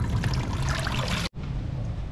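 Water from a garden hose spraying through a snake plant's root ball and pouring into a basin of muddy water. It stops abruptly about a second in, leaving a quieter hiss.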